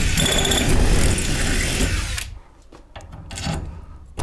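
Electric drill running for about two seconds, boring a hole through the greenhouse door's metal frame profile, then stopping, followed by a few light clicks as parts are handled.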